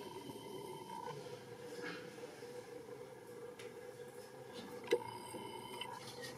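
Quiet room tone with a faint steady hum, and a single sharp click near the end.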